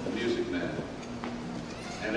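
Quiet, faint speech with pauses.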